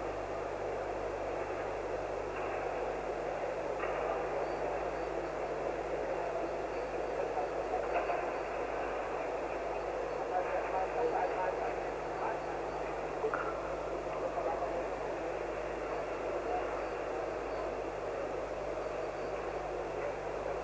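Steady murmur of a large crowd in a sports hall, many voices chattering at once with no single voice standing out.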